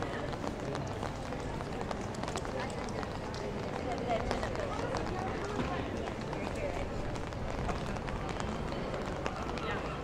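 Busy pedestrian street ambience: footsteps on wet paving and the chatter of passers-by, steady throughout.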